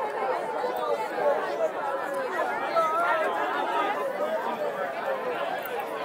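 A large crowd talking over one another: a dense, steady babble of many voices.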